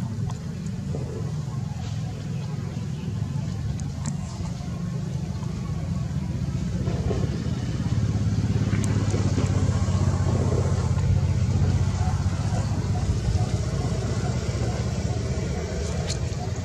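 A steady low motor rumble that grows louder about halfway through.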